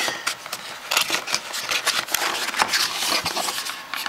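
Small cardboard phone box being opened by hand: cardboard scraping and rustling as the lid is worked off, with many quick clicks and taps.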